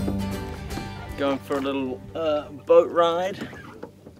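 Acoustic guitar music fading out within the first second, then a person's voice making a few short, wordless sliding calls over the next two seconds.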